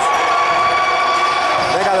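Gym scoreboard buzzer sounding one steady, high electronic tone for nearly two seconds, then cutting off.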